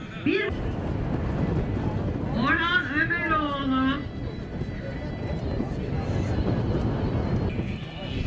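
A person's voice calling out: a short call right at the start, then a longer one from about two and a half to four seconds in, over a steady noisy outdoor background.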